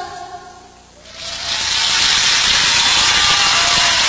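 The last sung note and the backing music die away. About a second in, a studio audience's applause rises and keeps going as a dense, steady clapping.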